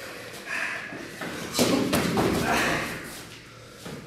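Blows landing during kickboxing sparring: a few dull thuds of gloved punches and kicks, the loudest about a second and a half in.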